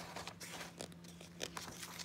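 A picture book's paper page being turned by hand and smoothed flat, rustling and crinkling in a few short crackles.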